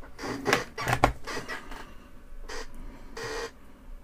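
Hands handling paper instruction sheets and small kit parts on a workbench: a string of short rustles with two sharp clicks in the first second or so.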